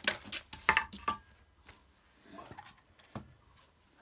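A few sharp knocks and clatters of objects being handled, bunched in the first second, then a single knock a little after three seconds.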